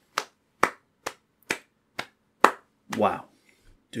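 One person clapping hands six times, slow and evenly spaced at about two claps a second, then a man's voice begins.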